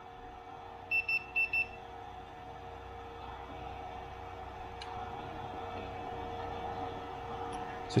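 Four short, high electronic beeps in quick succession about a second in, from the bench instruments, over a steady electrical hum that grows slightly louder.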